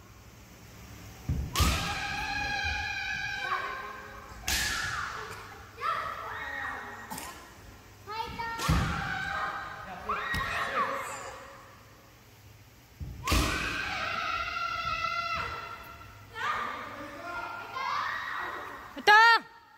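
Young kendo players' kiai shouts, long held high-pitched yells, each set off by a sharp thud of a stamping foot and bamboo sword strike on the wooden floor; this happens four times, echoing in a large hall.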